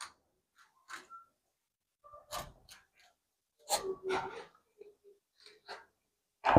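A rabbit nibbling a small piece of dry bread held out to it: a few faint, irregular crunches and small sounds, loudest about four seconds in.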